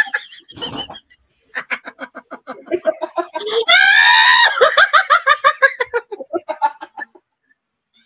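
A woman's hard, high-pitched laughter in quick bursts, rising to a shriek about four seconds in, then trailing off and stopping near the end.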